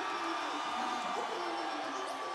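Live concert crowd cheering and shouting, many voices overlapping in a dense, steady wash.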